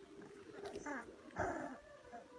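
Young puppies whimpering and yipping while they play, two short calls, the second louder.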